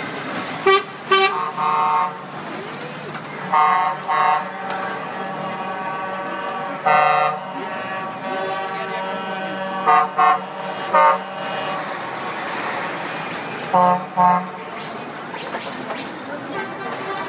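Truck horns honking in about a dozen short blasts, several in quick pairs, over the steady running of the passing lorries' engines.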